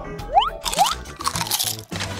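Comic eating sound effects: two quick rising whistle-like glides, then crunching, chewing noises of biting into hamburgers, over background music.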